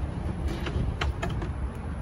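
Plastic front access cover of a Cummins Onan RV generator being unlatched and pulled off: a few short clicks and knocks about half a second to a second and a quarter in, over a steady low rumble.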